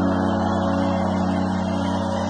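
Live band holding one sustained closing chord at the end of a song: several steady notes held unchanged, no singing.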